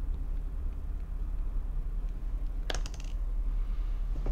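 Steady low hum of room background noise, with a short cluster of sharp clicks about two and a half seconds in.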